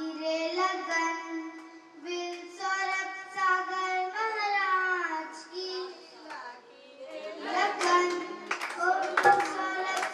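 A young girl sings a devotional song into a microphone in long, held notes, unaccompanied at first. After a short pause about seven seconds in, she sings on with drum strokes and clapping joining in.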